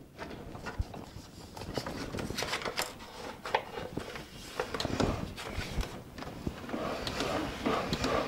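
Scattered clicks, knocks and paper rustling from hands working the paper-roll mechanism of a hand-turned busker organ; no pipes are sounding.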